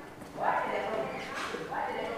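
Indistinct voices talking, too faint for words to be made out, starting about half a second in.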